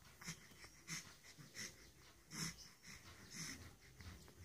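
An infant breathing noisily: short wheezy breaths, roughly one every two-thirds of a second, faint and uneven in strength.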